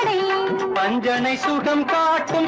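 Old Tamil film song music: a melody of held notes that step and bend, over full instrumental accompaniment.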